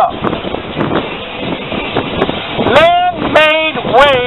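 A loud, high-pitched voice calling out for about a second near three seconds in, over steady background noise with wind on the microphone.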